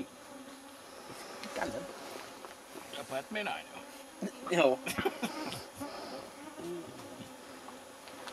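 Mosquitoes whining steadily around the microphone, a thin continuous buzz. A man's voice cuts in briefly a few times, loudest about halfway through.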